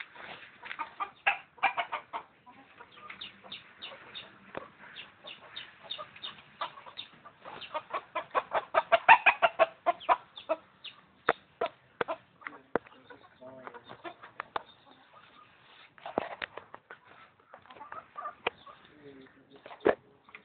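Chickens, a rooster among them, clucking in quick runs of short, sharp calls. The densest and loudest run comes about halfway through.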